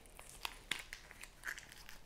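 Plastic candy-bar wrapper crinkling faintly as fingers peel its sealed end open, with a few small sharp crackles.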